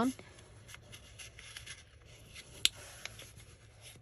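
Faint rustling and rubbing of a printed book page being folded down and creased by hand over a paper envelope, with one sharp tick about two and a half seconds in.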